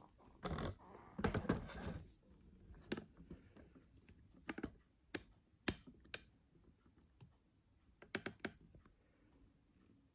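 Camera being handled and repositioned: about two seconds of rustling handling noise, then scattered sharp clicks and taps, with a quick run of three near the end.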